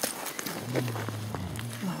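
Close handling noise of a shot chamois being moved on scree: scattered crackles and gravel crunches, with clothing rubbing against the microphone. A man's low voice is held steady over the middle, and 'Oh' is spoken at the very end.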